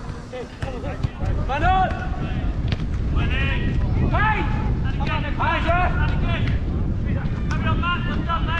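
Wind noise on the microphone, with footballers' short shouted calls across the pitch. The calls come one after another from about a second and a half in.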